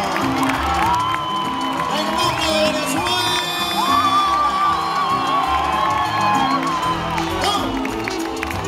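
Live salsa band playing, with a male lead singer singing into a microphone and a long high note held through the middle. The crowd cheers and whoops over the music.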